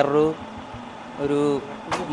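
Speech: a man talking in short phrases with a pause between them, over faint steady background noise.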